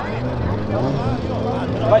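A car engine idling steadily, a low even hum, with faint voices behind it.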